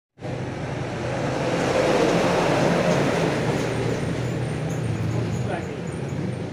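Road traffic noise: a motor vehicle passing close by, loudest about two seconds in and then easing, over a steady low engine hum.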